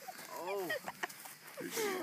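A person laughing: a few short pitched laughs that arch up and down in pitch, the second group near the end.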